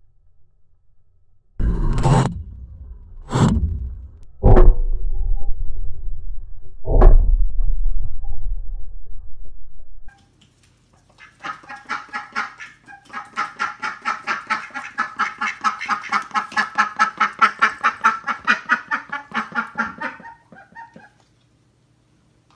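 Firecrackers exploding in water beside a Lego submarine: four sharp bangs in the first seven seconds, each followed by a low rumble. Then, after a short gap, ducks quacking in a rapid, steady run for about nine seconds.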